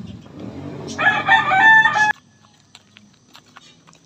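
A rooster crows once, loud, about a second in, its call stepping up in pitch. It is cut off abruptly about two seconds in, leaving a much quieter background.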